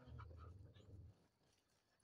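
Near silence: a faint low rumble for about the first second, then nothing.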